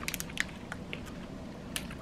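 A person chewing a bite of a chocolate-coated cookies and cream protein bar, with soft scattered mouth clicks.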